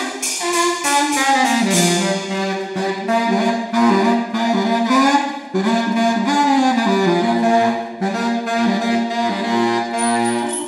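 Baritone saxophone played in held notes that bend and glide up and down in pitch, with brief breaks between phrases about five and a half and eight seconds in.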